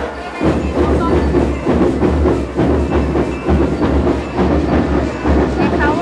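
A school marching rhythm band (banda rítmica) playing a steady drum cadence: deep bass-drum beats pulsing under dense, rapid drum strokes.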